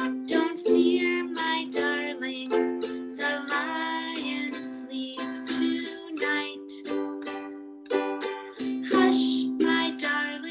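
Ukulele strummed in a steady rhythm of down and up strokes, with the chord changing every few seconds.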